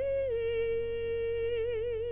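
A woman's solo singing voice holds one long note that breaks into vibrato near the end, over a low steady hum.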